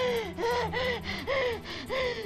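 A woman's panicked, gasping cries of distress, about four short high-pitched sobs in quick succession, each rising then falling in pitch.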